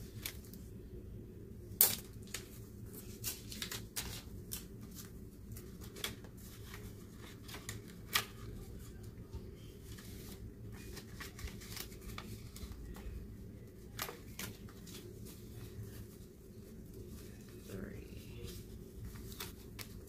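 Paper dollar bills rustling and sliding into clear plastic binder pockets as pages are turned, with scattered clicks and taps; the sharpest tap comes about two seconds in.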